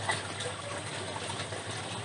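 Steady, even rushing of water flowing through the PVC channels of an NFT hydroponic system.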